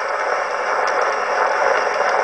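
Steady surface hiss with faint ticks from an Edison Diamond Disc played on an Edison S-19 phonograph, the diamond stylus tracing the groove after the recorded song has ended.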